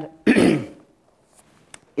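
A man clearing his throat once, a short rough burst about a quarter of a second in.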